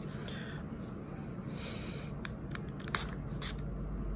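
Brief hiss of CND SolarSpeed quick-dry spray misted onto freshly polished nails about one and a half seconds in, followed by a few sharp clicks, the loudest about three seconds in.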